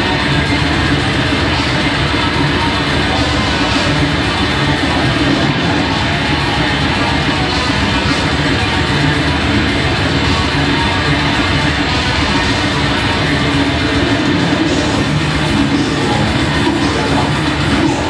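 Death metal band playing live: heavily distorted guitar and drum kit, loud and dense throughout, with fast, even cymbal strokes.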